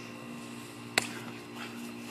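One sharp smack of a blow landing about halfway through, over a steady background hum.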